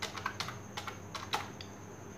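Typing on a computer keyboard: an irregular run of about half a dozen key clicks as a word is typed.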